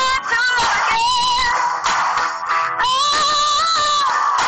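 A song with a sung melody over musical accompaniment; the voice bends through several notes, then holds one long note near the end.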